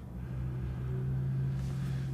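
A steady low hum holding one pitch without speech, growing slightly louder, with a faint hiss near the end.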